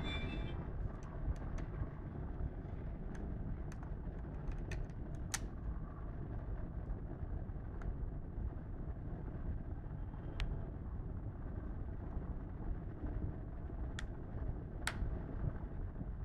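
Scattered sharp clicks of a plastic phone case being handled and its back cover closed, over a steady low background rumble.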